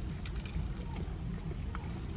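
Someone biting and chewing a crispy breaded chicken piece, a scatter of short crunchy clicks, over a steady low rumble inside a car's cabin.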